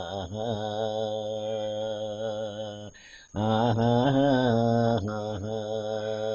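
A man singing long, held notes in a low voice, in chant-like style, from a Kannada harvest folk song (sugiya haadu). Two drawn-out phrases, with a short break about three seconds in and a step in pitch partway through the second.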